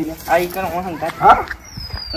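A person's voice speaking in short, quieter phrases, with a thin high whistle falling in pitch near the end.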